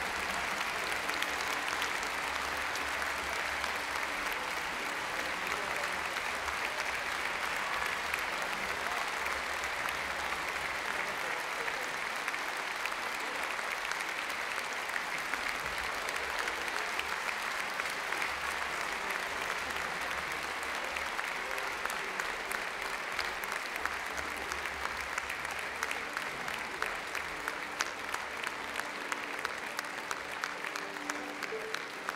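Large concert-hall audience applauding steadily, thinning toward the end into more separate, distinct claps.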